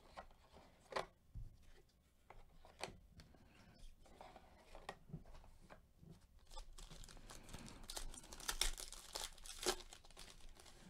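Foil wrapper of a Panini Diamond Kings baseball card pack crinkling and tearing as it is ripped open by hand. A few faint separate clicks and taps come first, and the crinkling grows denser in the last few seconds.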